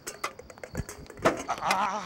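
A sharp knock about a second in, followed by a loud cry whose pitch wavers rapidly up and down.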